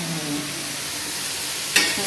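Food frying in hot oil in a pan, a steady sizzle, with one sharp clink of a utensil near the end.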